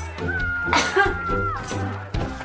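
Lively comedy background music with a steady bass, light percussive ticks and a long sliding high note through the middle.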